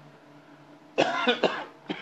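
A man coughing close to a desk microphone: a harsh burst of coughing about a second in, then one short cough near the end.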